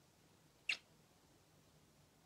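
A blown kiss: one short, squeaky lip smack just under a second in, then faint room tone with a low hum.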